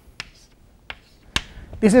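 Sharp taps of chalk against a blackboard while brackets are written: a few separate clicks, the loudest about a second and a half in.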